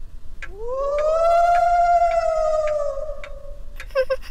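A clock ticking about twice a second, and from about half a second in a long wailing 'oooo' that rises, holds and slowly sinks over some three seconds: the moan of a cartoon ghost.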